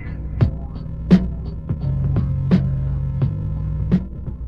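Hip-hop beat playing without vocals: a slow drum pattern with a sharp hit about every one and a half seconds and lighter hits between, over a steady low hum and a held bass note in the middle.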